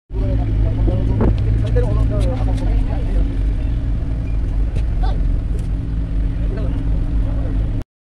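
Engine of a river ferry running steadily: a loud, even low drone with a constant hum above it, with faint passenger chatter.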